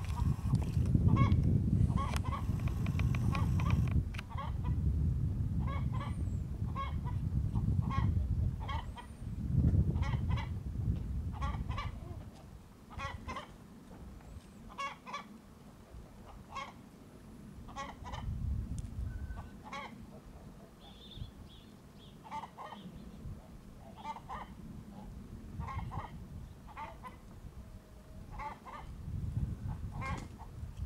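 Chickens clucking in a steady run of short calls, about one or two a second, under a low rumble that is heaviest in the first twelve seconds.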